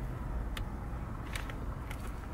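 Low steady hum of a car's interior with a few faint clicks.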